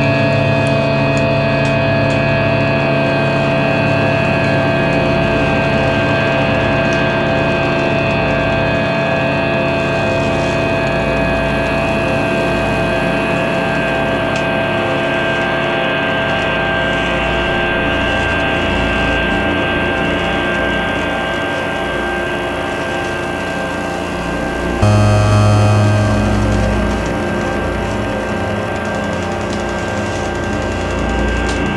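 Electronic music built from synthesizers and field recordings: a dense drone of many steady held tones, with faint crackling clicks over it in the first several seconds. About 25 seconds in, a loud low tone enters abruptly and dies away about two seconds later.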